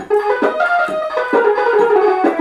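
Harmonium with a built-in electronic sound module, sounding through its own speaker on a selected preset voice. A melody is played on the keys, a new note every quarter to half second, each starting sharply.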